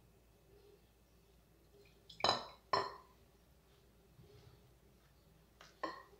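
A glass water carafe clinking against a glazed ceramic mixing bowl: two sharp, ringing clinks about half a second apart, then a lighter one near the end.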